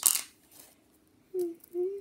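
A child's voice: a brief breathy hiss as a sung word trails off, then a pause, then two short hummed notes near the end.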